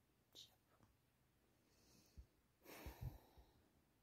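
Near silence, with a faint breath about half a second in and a soft sigh about three seconds in.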